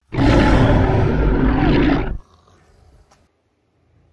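A loud, deep roar lasting about two seconds that stops abruptly, in the manner of a dramatic sound effect.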